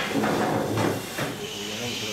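A man speaking Hebrew in a lecture. His voice is strong for about the first second, then quieter, with a faint steady hiss underneath.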